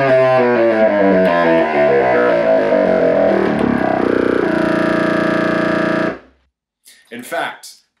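Contrabassoon playing a descending scale from the top of its range, stepping down note by note. It ends on one long low note held for about two seconds that cuts off suddenly.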